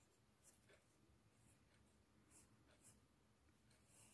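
Very faint scratching of a pencil on drawing paper: a few short strokes in near silence.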